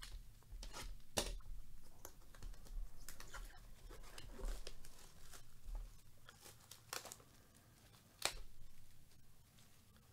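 A cardboard trading-card hobby box being opened by hand: its packaging tears and crinkles in a run of irregular, faint crackles, with two sharper rips about a second in and near the end.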